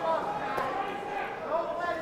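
Men's voices with no clear words, ending in a drawn-out exclamation.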